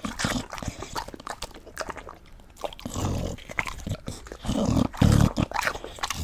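English bulldog eating a chunk of watermelon close to the microphone: wet chewing and licking with many small clicks, and louder noisy breaths about three seconds in and again around five seconds.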